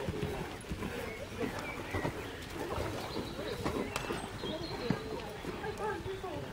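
Hoofbeats of a horse cantering on a sand arena, with people talking in the background.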